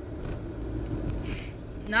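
Steady low rumble of a car heard from inside the cabin, with a short breathy hiss about one and a half seconds in.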